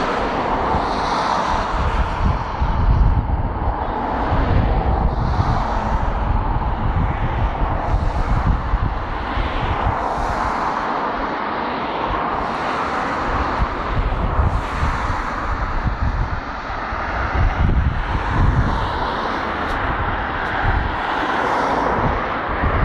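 A freight train of loaded ballast wagons rolling past, a steady rumble.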